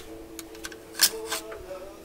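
A few sharp clicks and scrapes of a screwdriver against the metal window channel and weather-strip core of a 1956 Cadillac door, the loudest about halfway through.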